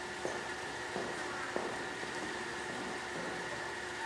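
Steady room hum of a school hall between lines of a play, with a couple of faint knocks, the first about a quarter second in and the second about a second and a half in.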